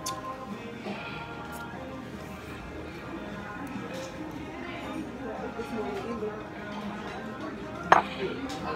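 Restaurant dining-room background: music and a murmur of voices, with occasional clinks of cutlery and dishes and a sharp clink near the end.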